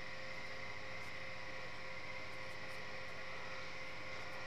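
Steady background hiss with a faint, constant electrical hum and whine; nothing else happens.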